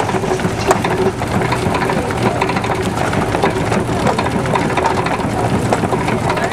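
Horse-powered wooden inclined treadmill and small grain separator running: a steady, dense clatter and rattle of wood and moving parts, with a sharp knock under a second in.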